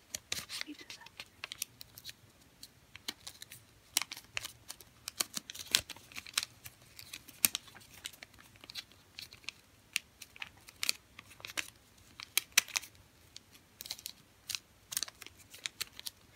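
A square of origami paper being folded and creased by hand: irregular crinkling and sharp little crackles as the folds are pressed down, scattered throughout.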